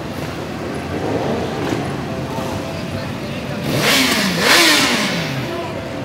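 Motorcycles riding past close by in a slow column, with two loud pass-bys about four and four and a half seconds in, each engine note falling in pitch as the bike goes past. Crowd voices underneath.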